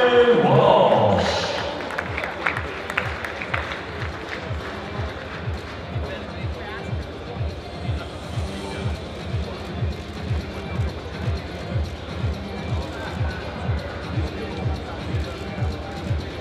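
Music with a steady, low repeating beat, about two beats a second.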